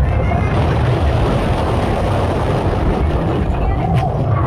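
Incredicoaster steel roller coaster train running along its track: a steady low rumble with wind buffeting the microphone, and faint riders' voices over it.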